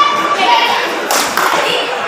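Spectators shouting and cheering loudly during a kabaddi raid, with a thud about a second in.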